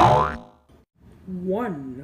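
A sudden loud cartoon sound effect with a falling pitch, dying away within half a second, followed just over a second in by a short voice sound whose pitch rises and falls.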